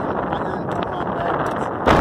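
Wind blowing across the microphone, a steady low rushing noise, with speech starting just before the end.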